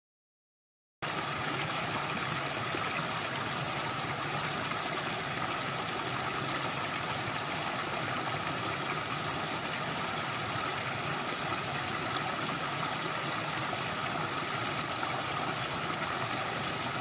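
Small rocky creek running steadily, its water spilling over a low cascade of stones. It starts about a second in, after a moment of complete silence.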